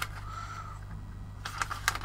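Paper instruction booklet being handled on a tabletop: a click at the start, then a few quick paper crinkles and taps near the end, over a steady low hum.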